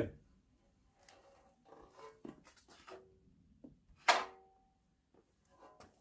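Faint clicks and knocks of hands handling the controls and frame of a Scheppach plate compactor whose engine is not running, with one sharper metallic clank about four seconds in.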